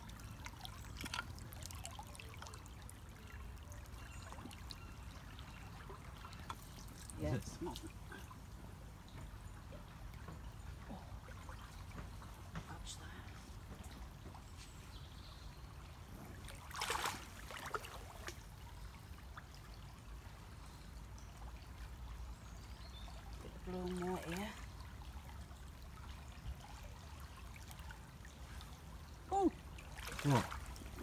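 Shallow river water trickling steadily over a pebble bed, with a few brief louder sounds breaking in, the clearest about seventeen seconds in.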